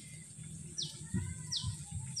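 A bird calling: a short, high chirp that falls in pitch, heard twice about a second apart.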